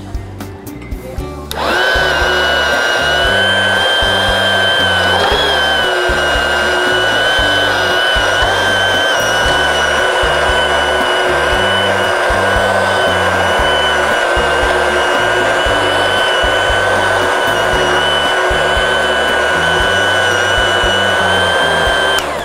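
Large commercial stick (immersion) blender switched on about a second and a half in and running steadily with a high whine as it purees chunks of tomato in vegetable juice, cutting off near the end.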